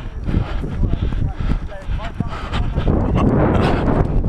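Running footsteps on grass and wind buffeting a first-person camera's microphone during a flag football play, a steady low rumble broken by quick thuds, with faint shouts from players.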